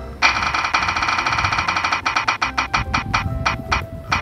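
Spinning-wheel sound effect: a fast run of short pitched ticks that gradually slows as the wheel turns toward a stop. Background music plays underneath.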